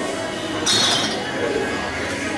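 Pool balls clacking sharply once, about two-thirds of a second in, as a shot is played: the cue ball striking an object ball.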